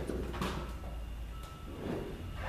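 Ultralight aircraft's metal wing being slid out off its spar attachments, with a short sliding scrape about half a second in and a softer one near the end, over a steady low hum.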